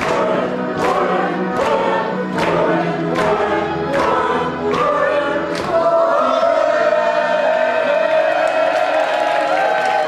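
A group of voices singing together in chorus over backing music with a steady beat. About six seconds in the beat drops out and the voices hold one long final chord.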